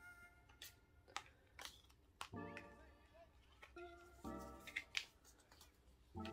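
Near silence with light handling noise: a few faint taps and clicks of photocards and cardboard album packaging being gathered and put away, under faint background music.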